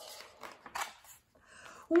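Soft paper rustle of a picture book's page being turned: a couple of brief swishes about half a second in.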